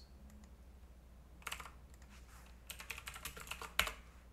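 Typing on a computer keyboard: a few keystrokes about a second and a half in, then a quick run of key presses near the end, with the loudest key press just before the end.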